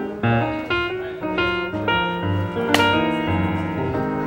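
Background film music: a run of short, distinct piano-like notes over lower bass notes, with one sharp hit about three quarters of the way through.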